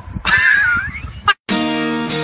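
A high, wavering cry lasting about a second, then a sudden cut to silence, and guitar music starting about one and a half seconds in.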